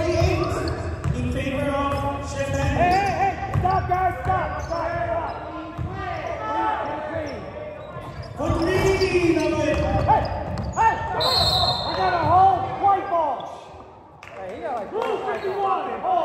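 Pickup basketball game on a hardwood gym floor: the ball bouncing, sneakers squeaking and players calling out to each other in the gym's echo.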